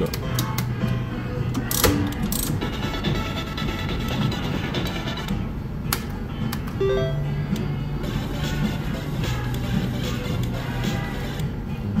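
Three-reel Top Dollar mechanical slot machine spinning its reels, with sharp clicks as the reels are started and stop, over continuous electronic slot-machine jingles and tones.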